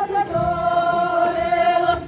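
A group of voices singing together in unison, a Tibetan folk song for the circle dance. After a short phrase they hold one long steady note from about half a second in until just before the end.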